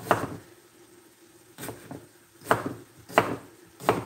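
Chef's knife chopping potatoes on a wooden cutting board: five separate, unevenly spaced chops, each a short, sharp knock of the blade on the board.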